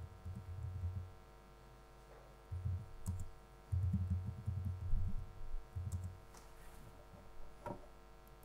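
Laptop keyboard being typed on in short irregular runs, heard mostly as dull low knocks through the lectern microphone, with a few faint sharper clicks.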